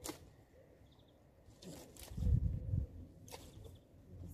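Dry twigs and brush cracking and rustling as cut branches are handled, with a few sharp snaps and a low thump near the middle.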